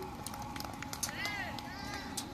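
Voices of spectators and players shouting at a soccer game, with high-pitched rising-and-falling calls about a second in and again near the end. Scattered sharp knocks throughout, over steady outdoor background noise.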